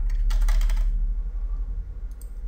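Computer keyboard typing: a quick run of keystrokes in the first second as a word is typed out, over a steady low hum.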